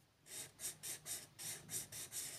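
Felt-tip marker stroking back and forth on paper while colouring in, a quick scratchy rhythm of about four strokes a second that starts just after a brief pause.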